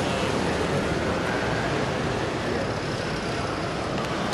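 Steady outdoor background noise: an even rushing hiss with no distinct events or voices.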